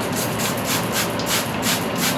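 Hand spray bottle misting water onto hair in quick repeated squirts, about four a second, each a short hiss.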